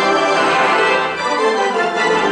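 Organ music: the organ plays full sustained chords, moving to a new chord about halfway through.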